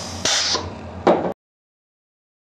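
Hand-operated 5/2 pneumatic plunger valve venting air through its exhaust silencer: a short hiss about a quarter second in, then a louder, sharper burst of air about a second in as the double-acting air cylinder shifts. Under a steady faint hiss at the start, then the sound cuts off suddenly after just over a second.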